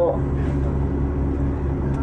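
A large vehicle engine running steadily: an even, low drone with a constant pitch.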